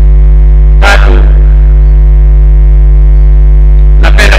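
Loud, steady electrical mains hum on the audio feed, unchanging throughout, with a single brief syllable of a man's voice about a second in.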